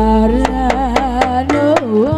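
Live amplified band music: a woman sings a slow, ornamented melody into a microphone over sharp hand-drum strokes and a steady low bass.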